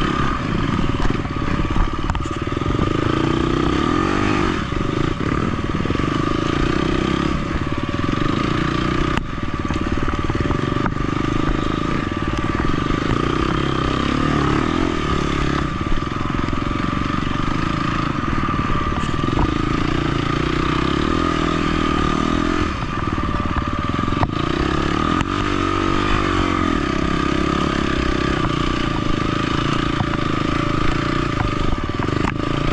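KTM 250 XC-F four-stroke single-cylinder dirt bike engine running under the rider, its revs rising and falling over and over as it is ridden through mud.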